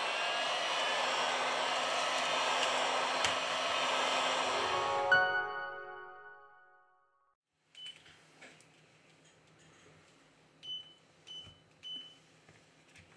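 Heat gun blowing hot air steadily onto a phone's glass back cover to soften its adhesive, then switched off with a click about five seconds in, its sound trailing away over about a second. A few faint short ticks near the end.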